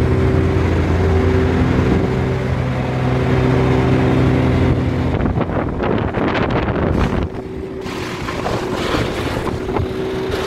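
Wood chipper engine running steadily. From about five seconds in, branches are fed through it and chipped with a dense crackling, and the engine note thins out after about seven seconds.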